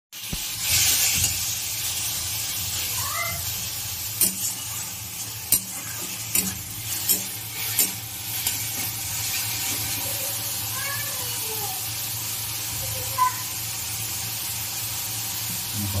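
Leafy greens with garlic and green chillies sizzling steadily in hot oil in a metal kadai, stirred with a metal spatula that scrapes the pan and clacks against it several times.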